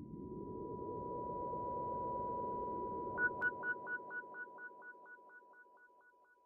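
Electronic intro sounds: a low hum swells up under a steady high tone, then about halfway through a short beep starts repeating about four times a second and fades away.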